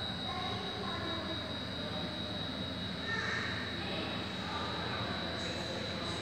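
Steady background noise of a large indoor hall with a constant thin high whine and faint, indistinct voices in the distance.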